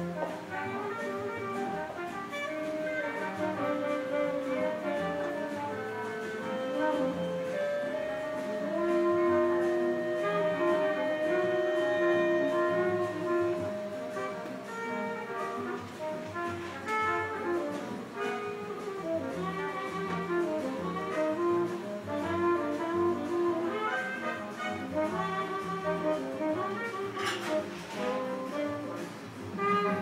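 Jazz playing from a vinyl record on a turntable, heard over the speakers of a vacuum-tube amplifier. The melody holds one long note in the middle, and there is a brief clink near the end.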